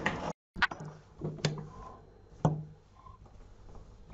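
Light handling noise as knitted pieces and yarn are moved about on a table: soft rustling with three sharp clicks or knocks about a second apart. A brief dropout to silence comes just after the start.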